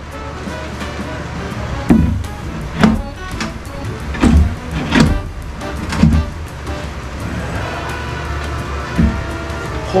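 Steel pry bar knocking and levering against nailed-down plywood floor sheets as they are pried up: about six sharp knocks at irregular intervals, over background music.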